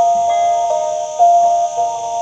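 Instrumental Lanna music: a phin pia (northern Thai chest-resonated stick zither) plays a slow melody of four held notes, each starting cleanly and sustaining before the next.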